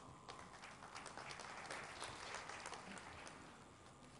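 Faint applause from an audience: a spatter of many hands clapping that builds up quickly, holds for a couple of seconds, then dies away.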